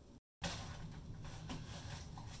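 Faint room tone, broken by a moment of dead silence from an edit cut near the start.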